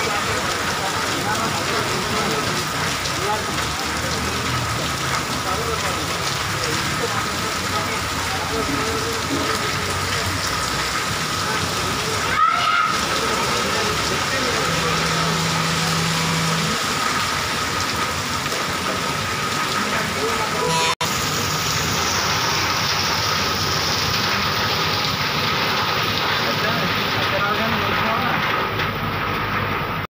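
Moderate rain falling steadily on a street and shop awnings, an even hiss throughout. A brief louder burst about twelve seconds in, and the sound cuts out for an instant about two-thirds of the way through.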